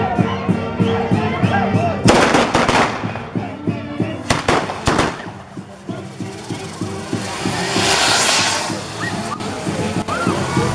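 Music playing while a castillo fireworks tower goes off: two clusters of loud crackling bangs, about two and four seconds in, then a hiss of spraying sparks that swells and fades near the end.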